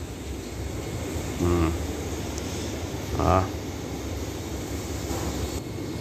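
Steady low background rumble, with two brief snatches of a voice about one and a half and three seconds in.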